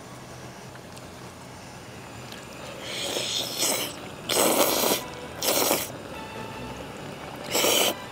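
A person slurping a bite of melted cheese and tteokbokki off chopsticks: four noisy slurps from about three seconds in, the longest and loudest near the middle.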